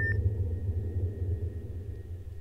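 Sci-fi spaceship sound effect from a music video's soundtrack: a deep rumbling drone with a thin, steady high tone, fading away over the two seconds. There is a short beep right at the start.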